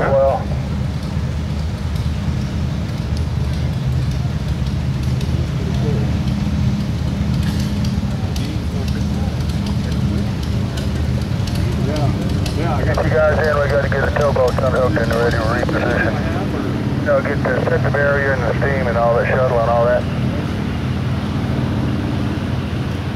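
Republic Seabee amphibian's single pusher piston engine idling on the water with a steady low drone.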